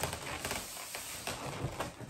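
Inflated latex twisting balloons rubbing against one another as they are handled and fitted together: a faint rustle with a few soft taps.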